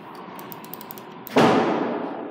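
A faint steady tone right after the elevator's down call button is pressed, then a single sudden loud clang about a second and a half in that rings away over about half a second.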